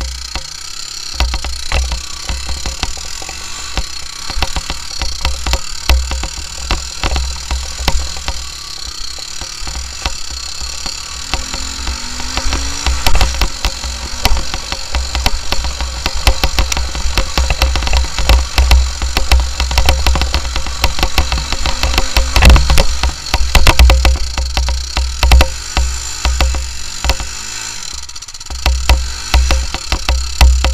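Honda TRX300EX quad's single-cylinder four-stroke engine running under changing throttle while riding a rough dirt trail, heard through heavy wind rumble on the camera microphone. Frequent knocks and rattles from the machine over the bumpy ground.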